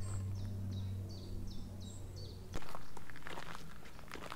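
A bird sings a run of about seven short, falling, high notes over a steady low hum. About two and a half seconds in, the sound cuts abruptly to footsteps crunching on a gravel path.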